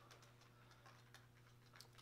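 Near silence: room tone with a faint steady low hum and a few faint ticks.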